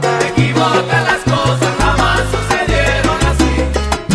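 Salsa romántica music playing continuously, with a stepping bass line under steady percussion and melodic lines.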